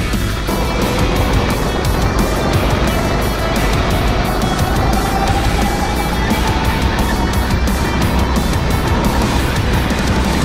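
Go-kart engine running under load, its pitch climbing gradually through the middle as the kart accelerates. Background music with a steady beat plays over it.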